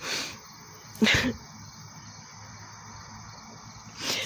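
Two short breathy sounds from a person, a soft exhale at the start and a louder, slightly voiced breath about a second in, over a steady faint high chirring of crickets.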